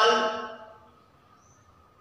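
A man's voice trailing off at the end of a word in the first half-second, then near silence: room tone, with a faint, brief high chirp about halfway through.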